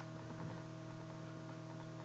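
Faint steady electrical hum with several steady tones, and a single faint click at the very start.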